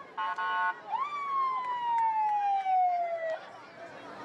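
Vehicle siren sounding from a pickup truck's roof speaker. It gives a short steady blast, then a wail that rises quickly and falls slowly for about two and a half seconds before cutting off.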